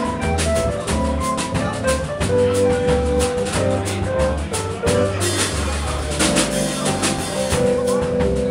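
Live jazz quartet of tenor sax, keyboard, upright bass and drum kit playing a samba-style instrumental, with held melody notes over a walking low bass line and steady drum and cymbal strokes. The cymbals grow busier about five seconds in.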